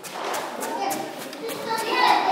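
A class of young children chattering at once, an overlapping hubbub of small voices, with a few short clicks or knocks among it.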